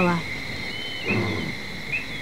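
Outdoor wildlife ambience: a steady high insect trill, a few short high chirps, and a brief low rumbling sound about a second in.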